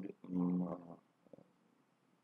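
A man's held, steady-pitched hesitation sound, an 'uhh' under a second long, then a faint click and quiet room.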